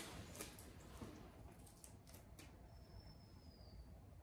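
Near silence with a few faint snips of scissors cutting through layered duct tape, trimming off its corners. A thin, faint high tone sounds for about a second near the end.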